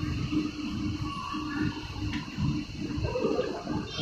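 Escalator running: a steady low rumble with a faint constant hum.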